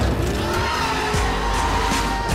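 Car action sound effects: tyres squealing and skidding over engine rumble, cutting in suddenly, with a music score underneath.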